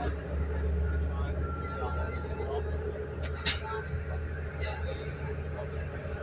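Passenger train running, heard from inside the carriage: a steady low rumble, with a short sharp noise about three and a half seconds in.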